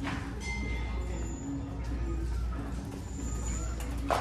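Background music over a steady low hum of shop ambience, with a sharp click of a sandal being handled on a metal shelf at the very start.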